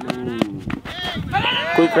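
Men's voices calling out in drawn-out shouts during play, with a short sharp knock near the end as a bat strikes a tennis ball.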